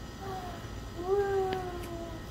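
An 8-month-old baby fussing: a short whimper, then about a second in a longer, slightly falling whiny cry.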